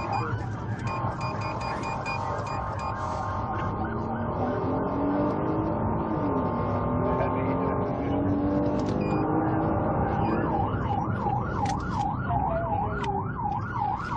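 Emergency vehicle siren over road traffic noise. It holds steady tones at first, then from about ten seconds in switches to a fast yelp, rising and falling about twice a second.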